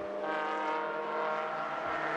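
Two Mazda MX-5 race cars with four-cylinder engines running hard in close company, a steady engine note with little change in pitch.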